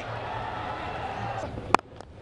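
Steady crowd and ground noise in a cricket stadium, then near the end a single sharp crack of a cricket bat striking the ball.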